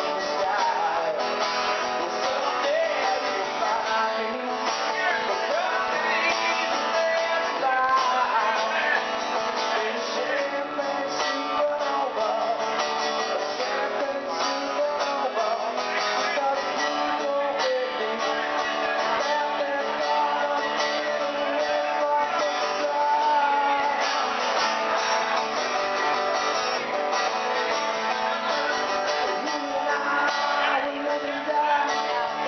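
Acoustic guitar strummed continuously, a steady, unbroken solo guitar passage.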